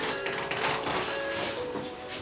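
Rubbing and rustling of several pairs of hands massaging a person's legs on a sheet-covered massage table, in irregular strokes. Faint background music runs underneath.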